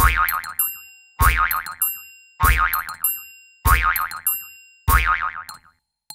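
Cartoon spring 'boing' sound effect, played five times about a second and a quarter apart. Each one starts sharply with a wobbling, wavering pitch and dies away.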